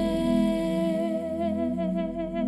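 A woman's singing voice holding one long note, with vibrato setting in about halfway through, over soft steady instrumental accompaniment.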